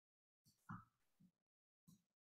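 Near silence, broken by a few faint, short low thuds about half a second in and again near the end.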